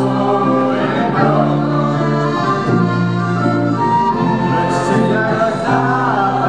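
Accordion playing held chords that change about once a second, with a group of voices singing along.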